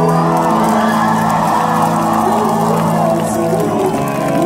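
Live rock band with electric guitars holding sustained, ringing chords, while a crowd cheers and shouts over them.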